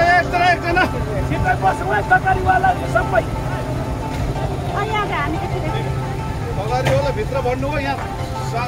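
People's voices over a steady low mechanical rumble, with some steady tones that may come from background music.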